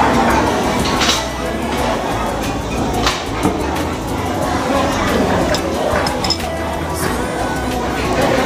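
Restaurant din: background music and indistinct chatter, with a few sharp clinks of cutlery against plates.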